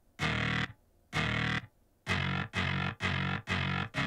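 Filtered, distorted synthesizer playing short pitched notes separated by silent gaps: two notes, then about halfway in a quicker run of about two notes a second with a fuller low end.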